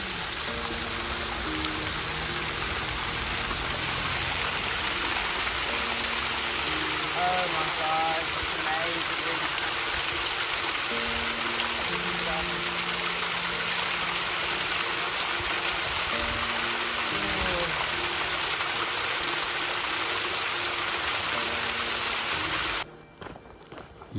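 Thermal spring water pouring down a travertine rock face in a steady rush, with background music over it; both cut off suddenly near the end.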